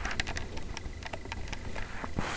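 Terry towel rustling and scratching close to the microphone as a wrapped-up guinea pig shifts inside it: a quick run of soft clicks, thickest in the first second, over a steady low hum.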